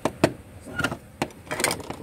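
Several light, sharp clicks and taps of Playmobil toys being handled: a plastic figure and a small wooden table piece knocking against each other and the floor of the toy house.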